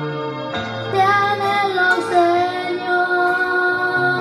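A boy singing a slow Spanish-language worship song into a handheld microphone, over backing music with sustained low chords that change about half a second in and again near the end.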